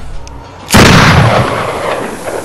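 A single loud, gunshot-like boom about three-quarters of a second in, with a long echoing tail that fades over a second and a half, as in a trailer's hit effect.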